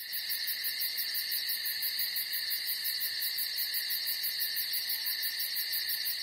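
A steady chorus of chirping insects, like crickets, held high in pitch with a fast, even pulse.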